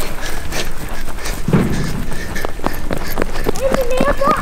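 Footsteps of people running, an uneven patter of quick steps.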